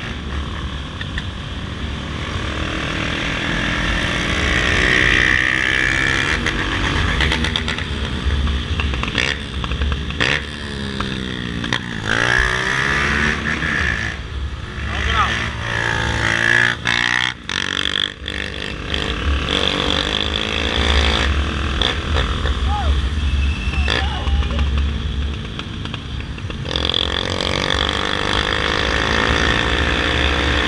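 Motorcycle engine running at road speed, with wind on the microphone. The engine pitch rises and falls with the throttle, most clearly around the middle.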